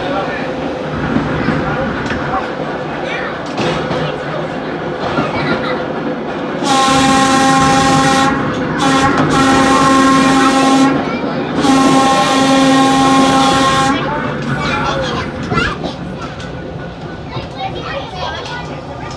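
A 1926 Brill interurban trolley's air whistle sounds three long blasts of about two seconds each, over the steady rumble and clatter of its steel wheels on the rails.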